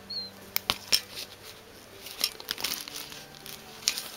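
Handling a cloth drawstring pouch with hard items inside: a few sharp clicks and knocks about half a second to a second in, then soft rustling, over faint background music.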